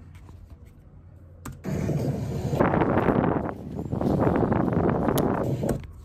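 Rough, wind-like rushing noise from a faulty camera microphone, starting about a second and a half in and running in two long swells before cutting off just before the end. It sounds like wind blowing although the air was calm: the sign of a microphone that seems to be broken.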